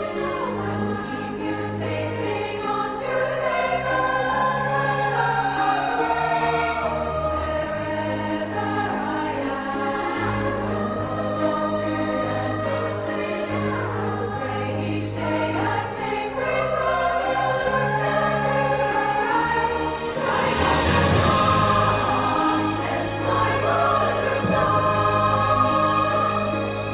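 Choral music: sung voices gliding over sustained low notes, growing louder and brighter about twenty seconds in.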